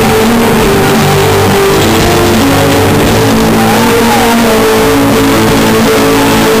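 A live rock band playing loud and distorted, with electric guitar, bass guitar and drums holding long sustained notes, and a pitch that swoops up and back down about four seconds in.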